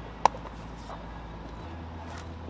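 A single sharp click about a quarter second in as the rear bumper splitter panels and their small parts are handled, over a steady low background hum.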